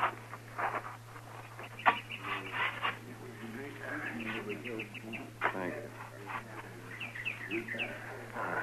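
Radio-drama sound effects of a burial: scattered scrapes and knocks of earth being shovelled into a grave. There are short animal calls in the middle and a quick run of bird chirps near the end, over a steady recording hum.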